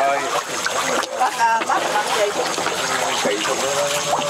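A shoal of fish splashing and churning at the surface of murky water, a continuous patter of small splashes.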